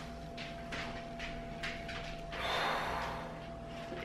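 A woman's heavy exhale, a sigh of about a second close to the microphone, about halfway through, after a few faint breaths and mouth clicks.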